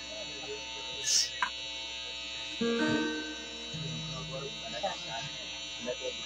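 Steady electrical buzz and hum from an amplified sound system left running in a pause between guitar passages, with a few faint low tones partway through.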